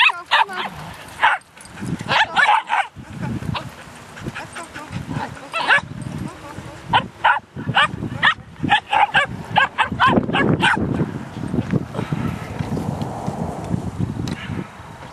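Several dogs barking and yipping in many short, sharp calls, busiest through the first ten seconds or so.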